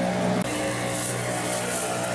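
A handful of straw rustling and scrubbing against a horse's mud-caked leg to rub the clay off. Under it runs a steady low hum.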